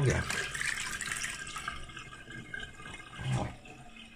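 Water splashing in a stainless-steel kitchen sink as a hand scrubs dishes with a sponge in the washing-up water, fading out after about two and a half seconds.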